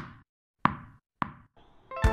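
A ball bouncing as a sound effect: three bounces, each coming sooner and softer than the last, like a ball settling. Music starts right at the end.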